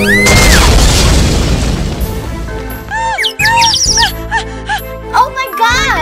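A loud cartoon car crash just after the start, a sudden noisy burst that fades over about two seconds, over background music. Later comes a run of short, high, squeaky rising-and-falling cartoon vocal sounds.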